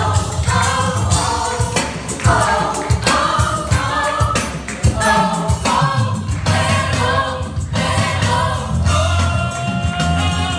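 A live church worship band and singers performing a Spanish-language worship song to a fast Latin beat, several voices singing together over bass and percussion.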